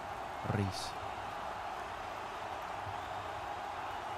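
One short spoken word, a player's name, then a steady, even background hiss with no other distinct sounds.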